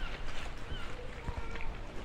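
Outdoor street background: a low rumble with faint distant voices and a few short high chirps.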